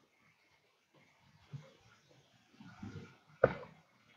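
Mostly near silence, then faint low murmurs and one sharp click shortly before the end.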